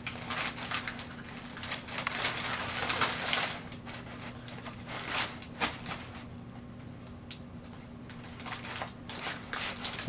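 Brown kraft packing paper crinkling and rustling in irregular bursts as a kitten plays and scrabbles under it, busiest about two to three and a half seconds in, sparser in the middle, picking up again near the end.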